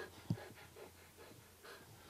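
A walker breathing hard, panting after an uphill climb, with a soft thump about a quarter second in.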